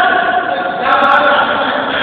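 Several people's voices raised together in long, drawn-out calls: one held call, then a second starting just under a second in.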